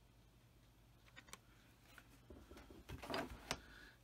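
Quiet room, then from about a second in light clicks and rustling that grow louder and denser over the last second and a half: hands handling a plastic model saucer.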